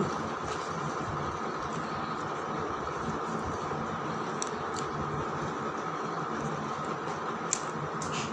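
Steady background hiss, with a few faint clicks from the layers of a 3x3 Rubik's cube being turned, the sharpest click near the end.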